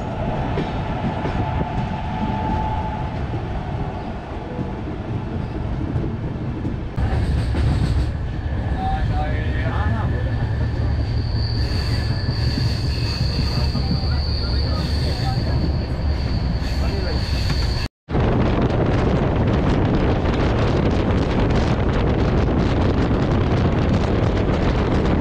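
Indian express passenger train running after pulling out of a station: steady wheel-on-rail rumble and running noise. In the middle a high, steady whine holds for several seconds, and near the end there is a dense rushing noise of the train at speed.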